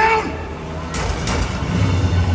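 Jet ski engines running out on the water, with a brief shouted voice right at the start.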